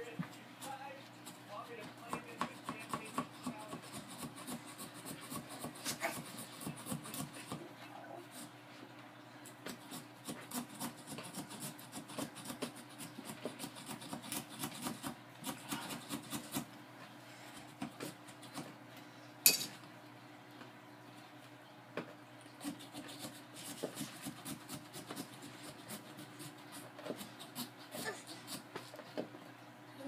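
Small serrated pumpkin-carving saw sawing through the pumpkin's rind around the stem, a long run of quick, irregular rasping strokes. A single sharp click stands out about two-thirds of the way through.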